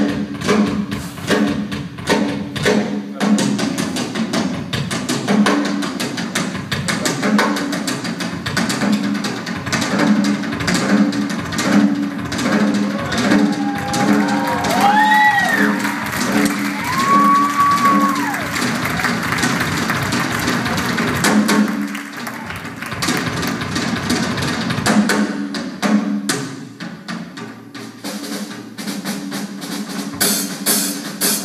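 Live band music led by a drum kit, the drummer playing busy, dense strokes over a low, regularly repeating bass figure. About halfway through, a few short tones rise and fall above it.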